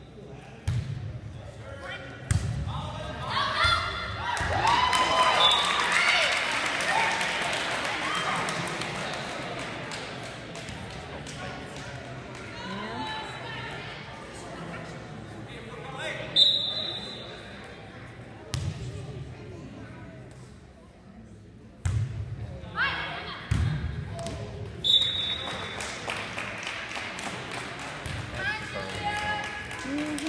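Volleyball being played in an echoing gymnasium: the ball smacks off hands as it is served and played, and spectators cheer and shout, loudest in the first third. A short referee's whistle sounds twice, just before serves.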